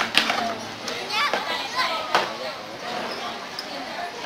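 White plastic chair being tipped and turned over by an orangutan, giving a few sharp knocks on the hard floor, the loudest just after the start and about two seconds in. Voices of people and children chatter underneath.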